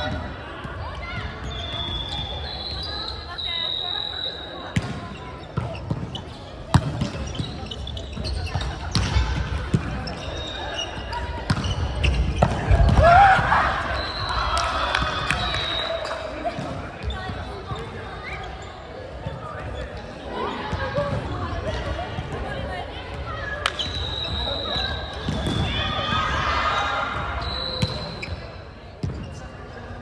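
Indoor volleyball play echoing in a sports hall: sharp slaps of the ball being hit and striking the floor, brief squeaks of shoes on the wooden court, and players calling out, loudest in a burst of shouting partway through.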